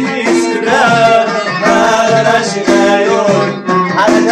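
Live Amazigh folk music from the Middle Atlas: a lotar (plucked lute) and a violin play a wavering melody over a steady beat of hand-struck frame drums.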